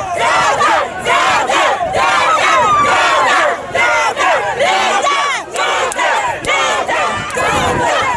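A dense crowd of party supporters shouting and cheering, with many excited voices overlapping loudly.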